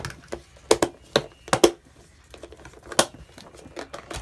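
Plastic storage case of mini ink pads being handled, its lid and clasps clicking and knocking: a run of sharp clicks in the first two seconds and another about three seconds in.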